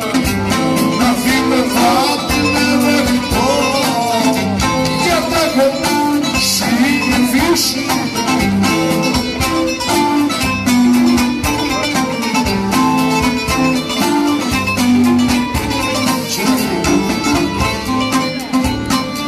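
Live Cretan folk music: a bowed string melody with ornamented, wavering runs played over strummed lutes (laouto), continuous and lively.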